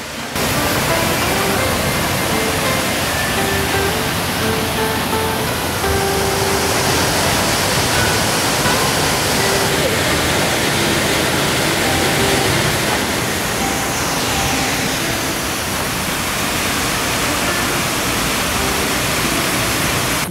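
Steady rushing of a small waterfall and stream cascading over rocks into a plunge pool. Soft background music with a slow melody plays underneath.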